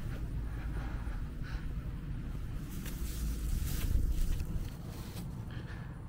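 Wind buffeting the microphone: a low, steady rumble that swells about three to four seconds in, then eases.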